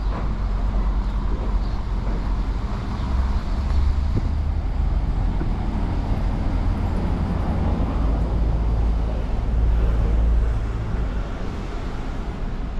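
City street traffic: a steady rumble of vehicle engines and road noise that swells as vehicles pass, most strongly around four seconds in and again near ten seconds.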